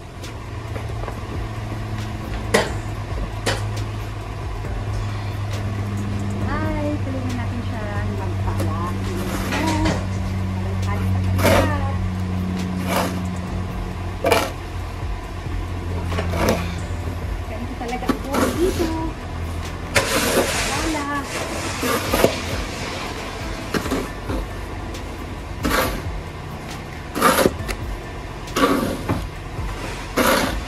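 Snow shovel scraping and scooping snow off a walkway in repeated, irregular strokes. Under them runs a steady low hum, like an idling vehicle, which fades out about halfway.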